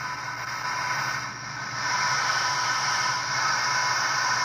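1964 Arvin eight-transistor AM pocket radio just switched on, giving a steady hiss of static with a faint electrical buzz from its small speaker, no station tuned in. It gets louder about two seconds in.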